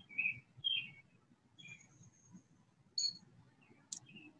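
Small birds chirping in short, separate calls: a few chirps in the first second and a half, a thin high whistle held for under a second, and a sharper chirp about three seconds in.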